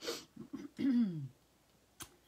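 A woman clearing her throat: a breathy rasp, then a couple of short catches and a low voiced hum that falls in pitch about a second in.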